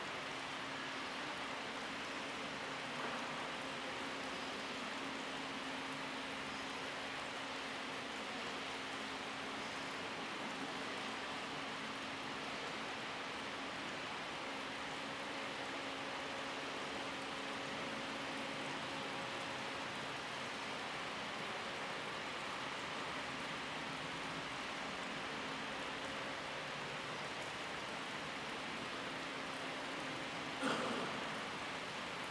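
Steady, even hiss with a faint low hum underneath and no speech, the constant background noise of the room.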